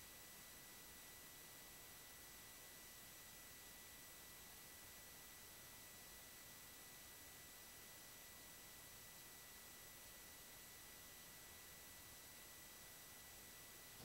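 Near silence: a faint steady hiss with a thin high-pitched whine.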